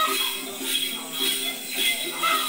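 A cluster of small jingle bells (Then ritual xóc nhạc) shaken in a steady rhythm, about two jangling shakes a second.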